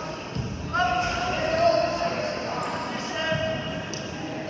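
Voices calling out in a large, echoing gym, in two drawn-out calls, with two dull thuds: one about a third of a second in and one a little after three seconds.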